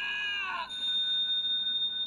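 A high voice from the episode's soundtrack trails off in a slightly falling held note, then about two-thirds of a second in gives way to a steady high ringing tone that holds on.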